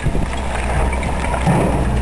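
Diesel engine of a JCB digger running at a steady idle, a continuous low drone.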